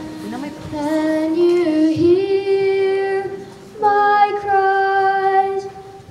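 A child soloist singing long held notes, sliding up into some of them, with a short break between phrases about three and a half seconds in.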